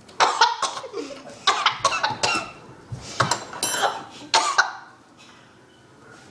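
Several people coughing and sputtering on mouthfuls of dry ground cinnamon, a run of sudden coughs over the first four and a half seconds, then a quieter stretch near the end.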